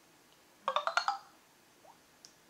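Electronic notification chime from a device: a short run of a few quick, bright notes lasting about half a second, near the middle.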